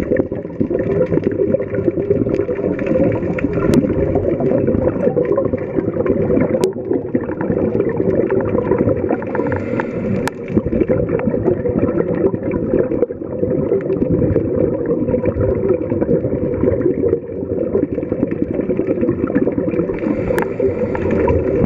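Underwater sound picked up inside a camera's waterproof housing: scuba regulator exhaust bubbles gurgling over a dense low rushing noise, with a faint steady hum beneath and a few faint clicks.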